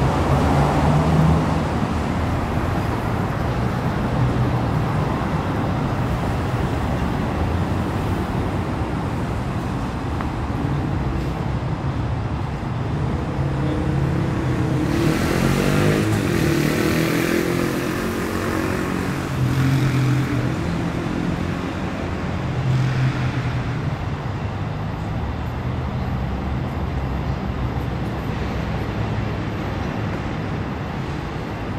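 City street traffic: the steady rumble of cars going by. About halfway through, one vehicle passes close with a rush of tyre noise, its engine pitch rising and falling for a few seconds.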